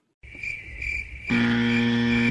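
Crickets chirping steadily as a night-time background, starting after a brief dropout. About a second and a half in, a loud, steady, low buzzing tone joins for about a second.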